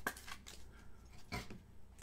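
Trading cards being handled on a tabletop: faint rustling with a couple of light taps, the sharpest about one and a half seconds in.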